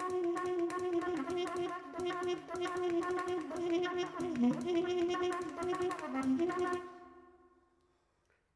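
Improvised trumpet playing: a held horn tone that wavers and bends in pitch, with rapid clicking running through it. The sound fades away over the last second or so.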